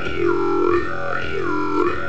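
Jew's harp played over a steady drone, the player's mouth shaping its overtones into a vowel-like sweep that rises and falls again and again.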